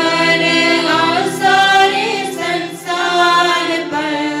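A devotional hymn sung to music, voices holding long notes with slight waver, in the manner of a choir.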